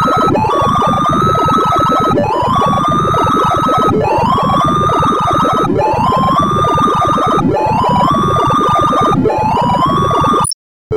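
Bubble sort being played by the Sound of Sorting visualizer: synthesized beeps, each pitched by the height of the bar being compared, in a dense chirping jumble. Over it runs a tone that climbs and then holds steady at the top, starting over about every two seconds as each pass carries the largest value toward the end. It starts abruptly at the beginning.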